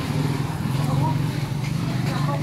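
Steady low drone of a running engine, with faint voices in the background.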